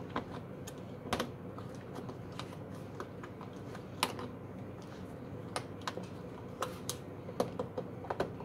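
Small plastic clicks and taps at irregular intervals as RJ45 data modules are handled and pressed into a Legrand trunking mounting frame, with a sharper snap about four seconds in.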